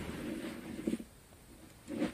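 Faint rustling and shuffling of clothing and sofa cushions as a person gets up from a sofa, with a couple of soft bumps.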